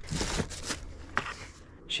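Rustling and crinkling of a fabric shopping bag and plastic packaging as items are rummaged out of a storage bin, with a few short knocks scattered through.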